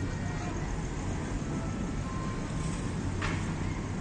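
Outdoor town-square ambience: a steady low rumble of road traffic with faint distant voices, and one brief sharp click about three seconds in.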